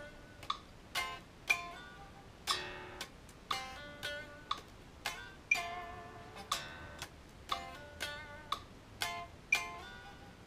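Electric guitar, an Ibanez, picking a blues rock riff in Drop D tuning, played along with a metronome clicking steadily about twice a second.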